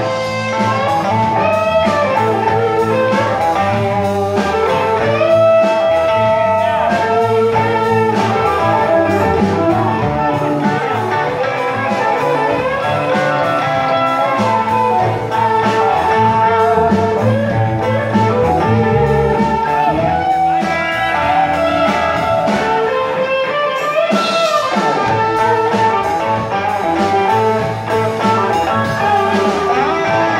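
Live blues band playing an instrumental passage: electric guitars and a drum kit, with a harmonica played into the vocal microphone, its notes bending.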